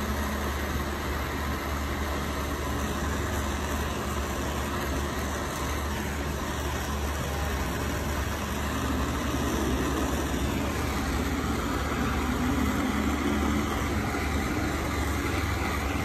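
Gas torch flame burning steadily, a continuous rushing hiss with a low hum beneath it.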